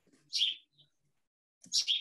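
Short bird chirps, two brief bursts about a second and a half apart, coming through a participant's unmuted microphone on a video call.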